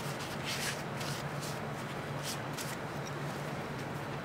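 A wet paper towel rubbing and rustling on a welded stainless steel plate as it wipes off citric-acid passivation paste, with a few faint short scrapes, over a steady low hum.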